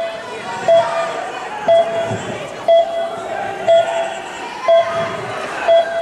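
A short electronic beep repeating steadily about once a second, over the general murmur and chatter of a crowded sports hall.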